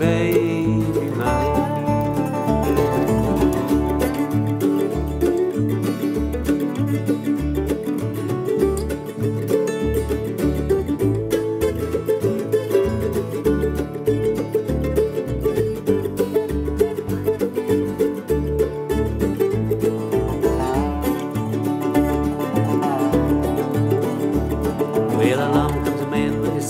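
Bluegrass instrumental break: fast-picked string instruments, with banjo to the fore, over a steady bass beat. The singing comes back in right at the end.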